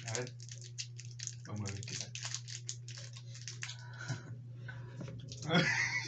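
Small plastic candy wrapper crackling in quick, irregular ticks as it is picked open by hand, over a steady low hum. A louder burst of crackling comes about five and a half seconds in.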